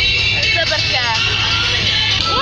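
Steady low rumble of a moving vehicle heard from inside the cabin, with a voice and music over it.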